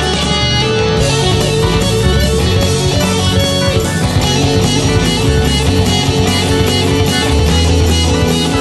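Instrumental progressive rock: a band passage led by electric guitar over bass and drums, with a steady beat and no vocals.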